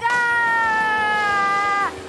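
A cartoon little girl's voice holding one long high note for nearly two seconds, drifting slightly lower and dropping away at the end.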